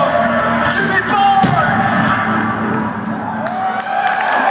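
Live band music on a festival stage, with audience whoops and yells over it.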